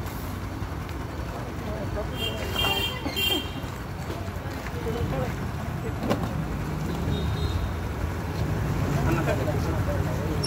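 Steady low rumble of road traffic with low, indistinct voices of people standing close by, and a brief high-pitched sound two to three seconds in.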